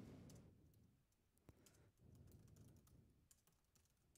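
Faint keystrokes on a computer keyboard: a single click about one and a half seconds in, then a short run of soft taps between two and three seconds in.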